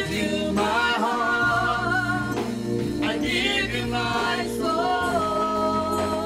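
A woman singing a slow gospel worship song with keyboard accompaniment, drawing out long held notes near the end.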